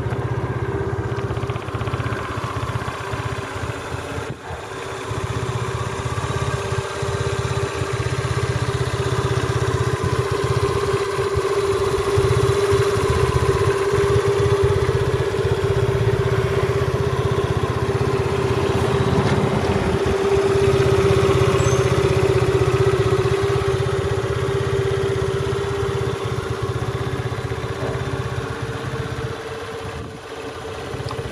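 Honda Dio FI scooter's small fuel-injected four-stroke single engine idling steadily, with an even note that swells slightly in the middle.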